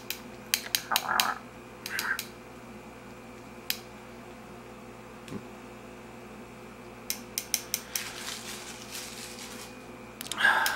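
Stainless steel ice tongs being handled, their metal arms clicking together: a quick run of sharp metallic clicks with a couple of short scrapes, then a quieter stretch, then another quick run of clicks about seven seconds in.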